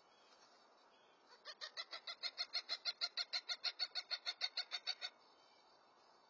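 A bird calling a rapid, even series of about two dozen loud notes, six or seven a second, building in loudness over the first few and then cutting off suddenly after nearly four seconds.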